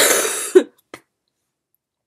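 A woman coughing into her fist: one loud cough lasting about half a second, ending in a short second cough, then a faint catch about a second in.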